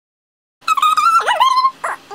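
A high-pitched whining cry that starts about half a second in, wavering, dipping sharply in pitch and rising again, followed by a couple of short yelps near the end.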